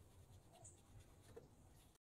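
Near silence: a faint low hum with a few soft, scattered rustles and clicks.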